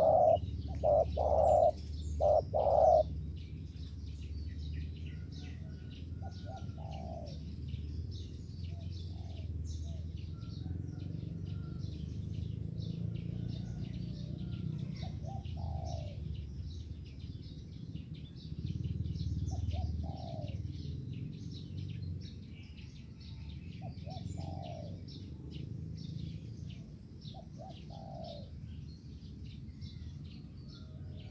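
Spotted doves cooing: a loud phrase of about four coos in the first few seconds, then fainter short coo phrases every three to four seconds. Dense high chirping of small birds and a low steady rumble run underneath.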